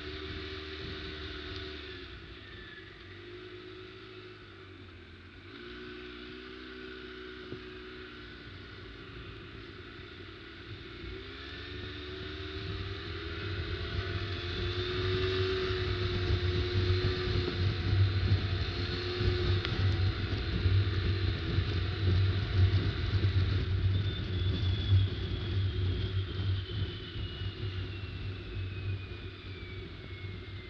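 ATV engine running while riding a rough dirt trail, picking up speed about twelve seconds in and growing louder, over a steady low rumble. Near the end a high whine slides down in pitch as it slows.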